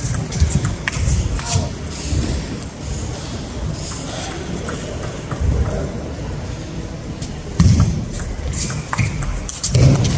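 Table tennis ball clicking off bats and the table in an irregular practice-rally rhythm, echoing in a large hall. Several louder low thumps come in between, the strongest about three-quarters of the way through.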